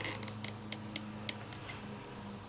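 Several light, sharp clicks and taps of hard plastic stamping pieces being handled, bunched in the first second and a half, over a faint steady hum.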